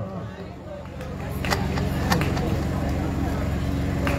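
A steady low hum that builds up about a second in, with a few faint clicks around the middle.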